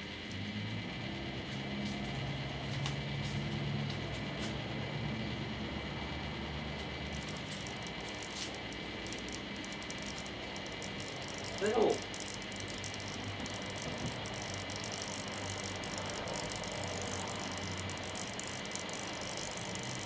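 Microwave-oven transformers humming steadily under heavy load, about 1500 volts at 2 amps, while driving fluorescent tubes submerged in water. Irregular crackling clicks run through the hum.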